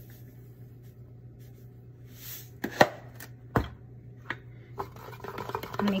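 A few sharp knocks and clicks of a utensil against a kitchen bowl or jar, the loudest about three and a half seconds in, with a short hiss about two seconds in, as salt goes into the sesame paste before it is mixed.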